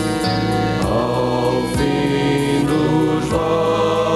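A rock band playing a song: sung vocals over electric guitar and a drum beat, with a low drum hit about once a second.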